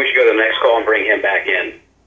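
Speech over a telephone line: a voice talking for nearly two seconds with the thin, narrow sound of a phone connection, then stopping.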